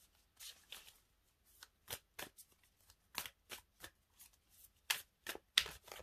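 A deck of oracle cards being shuffled and handled by hand: a run of short, irregular card snaps and slides, the loudest a little before the end.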